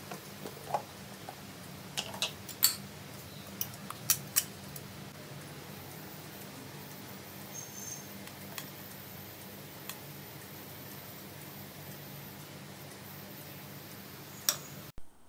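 A metal spoon clinking and scraping against a stainless-steel mixer-grinder jar as ground chicken is scooped out. The sharp clinks come in a cluster over the first few seconds, with a couple more later, over a steady low hum.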